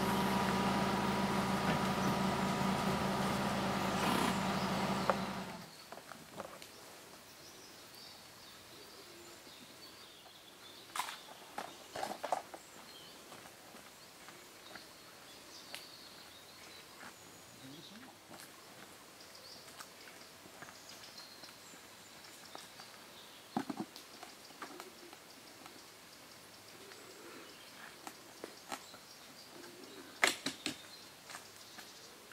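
A small 4x4's engine running steadily, then switched off about five and a half seconds in. After that there is quiet outdoor air with scattered short knocks and clicks.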